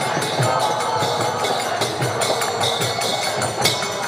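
Devotional kirtan music in an instrumental gap between sung lines: hand cymbals (karatalas) and a drum keep a steady rhythm while the singing pauses.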